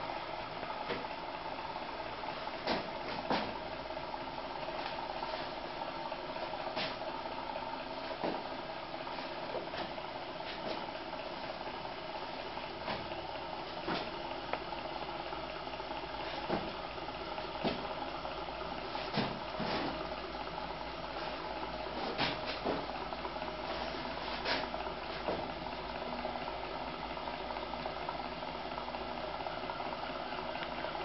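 Jerry Howell 'Vickie' hot air engine running steadily on its spirit lamp, flywheel turning and driving a small belt-driven cooling fan: a steady even whirr with scattered faint clicks.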